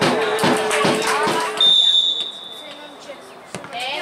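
Players shouting, then a single short blast of the referee's whistle about halfway through, stopping play for a foul. A sharp knock near the end, the ball being struck.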